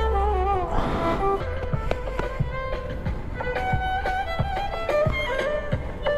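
Street violinist playing a melody of long held notes with vibrato, amplified through a small portable speaker.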